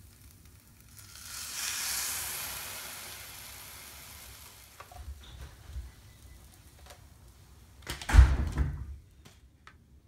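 Waffle batter sizzling in a hot electric waffle iron as the lid closes, a hiss that swells about a second in and fades over a few seconds. A loud thump and short clatter near the end.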